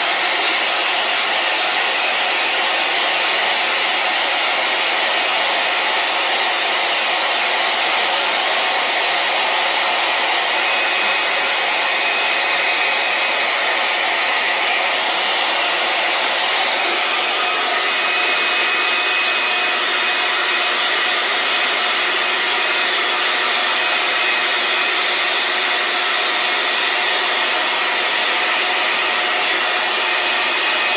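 iTeraCare THz Health Blower running steadily, the hair-dryer-like rush of its fan and air flow close to the microphone. Its tone shifts slightly a little past halfway, and a faint whine comes and goes.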